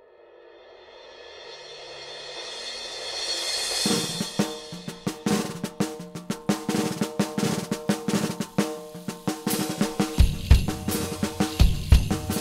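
The song's recorded intro: a swell rises out of silence over the first four seconds, then the band's drum kit and percussion come in at a steady beat with held instrument notes, and heavy bass-drum hits stand out near the end.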